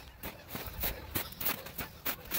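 Footsteps crunching through snow at a quick pace, about three steps a second.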